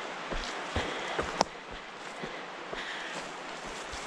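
A hiker's footsteps on a dirt forest trail: soft, irregular thuds with a faint rustle of brush and pack, and one sharp click about a second and a half in.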